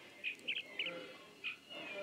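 A few short, high bird-like chirps, spaced unevenly over about a second and a half, over a faint background.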